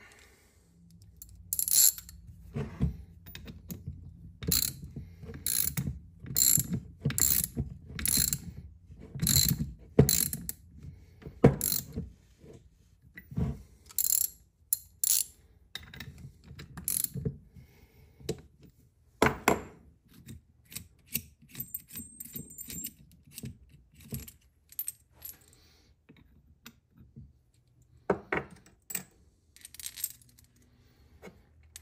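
Ratchet wrench clicking in short strokes as it slowly turns a bolt-and-socket puller, drawing the pump non-return valve body out of a Laycock de Normanville D-type overdrive housing. Sharp metallic clicks come at an irregular pace and thin out after about twenty seconds. There are a few metal clinks of socket and washers near the end.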